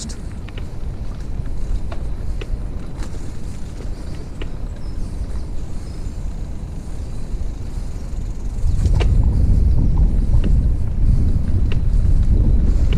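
Wheels rolling over an uneven earth towpath: a steady low rumble with scattered small clicks, growing louder and rougher about nine seconds in.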